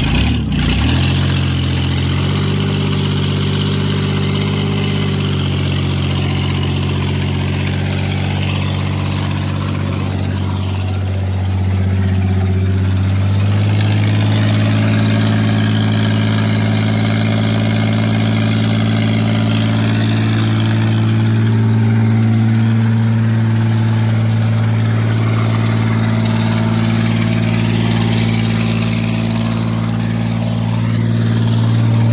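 Ford F-150 pickup's engine held at high, steady revs through a burnout on dirt. Its pitch steps up about thirteen seconds in and holds there.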